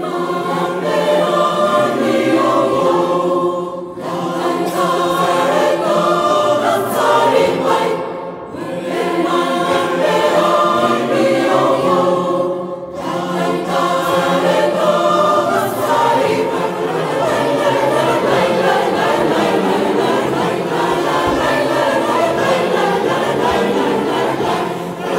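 Large mixed choir of children and adults singing, in phrases with brief breaks about every four seconds for the first half, then without a break.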